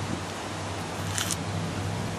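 Adhesive paper warning label being peeled off a GFCI receptacle, a short high tearing rasp a little over a second in. A steady low hum runs underneath.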